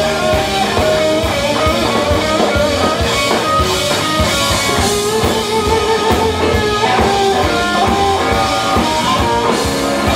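Blues band playing live with no vocals: electric guitar, bass guitar and drum kit, with a melodic lead line of held, bending notes over the rhythm.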